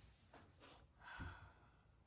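Near silence, broken about a second in by one soft, brief sigh.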